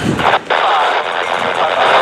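Scanner radio static: a loud, even hiss with a brief crackle just before it. The hiss opens about half a second in and cuts off just after the end, as the channel is keyed between railroad transmissions.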